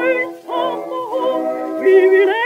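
Music played from a 1918 acoustic-era 78 rpm disc of a contralto with orchestra: held notes that waver in pitch, with a brief dip about half a second in.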